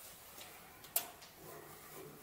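Faint scuffs and ticks of someone moving through a dark, debris-strewn room, with one sharp click about a second in.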